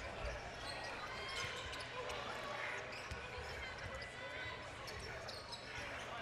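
Basketball arena sound during live play: a basketball bouncing on the hardwood court now and then over a steady murmur of the crowd.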